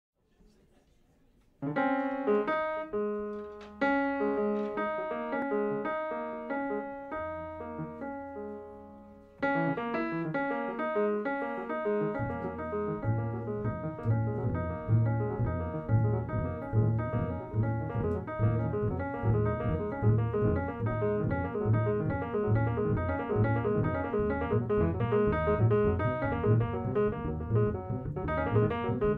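Live jazz trio: an acoustic piano opens with struck chords that ring and fade, then plays busier lines from about nine seconds in, and a double bass joins with a steady low pulse about twelve seconds in.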